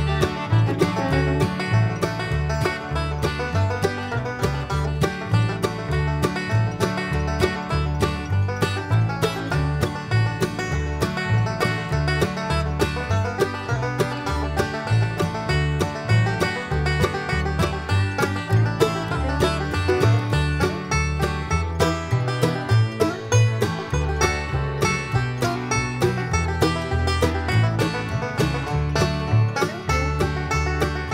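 Background bluegrass instrumental music led by a picked banjo, with a steady rhythm.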